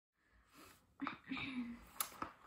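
A girl's brief vocal sounds before she starts talking: a sudden breathy sound about a second in, then a short voiced sound that falls slightly in pitch.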